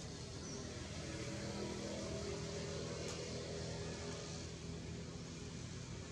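Outdoor background noise with a faint engine-like hum that swells in the middle and fades, and a single sharp click about three seconds in.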